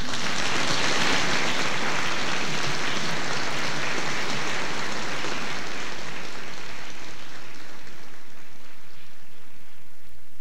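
Audience applauding, starting suddenly as the singing ends and gradually dying away over about eight seconds.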